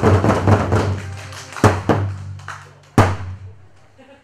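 Korean barrel drums (buk) beaten in a fast run over backing music, then two spaced accented strokes and a final loud hit about three seconds in that rings out as the number ends.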